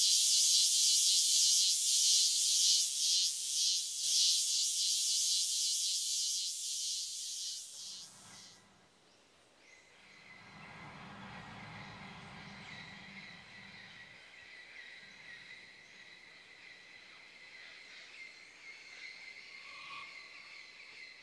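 A cicada's loud, shrill call: a dense, pulsing high-pitched buzz that dies away about eight seconds in. After it comes a much fainter background with a thin, steady high drone.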